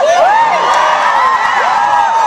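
An audience of fans screaming and cheering, many high voices shrieking at once, breaking out suddenly.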